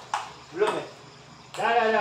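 A table tennis ball making two quick sharp clicks against bat and table, a tenth of a second apart. A short vocal exclamation follows about half a second later, and a man starts talking near the end.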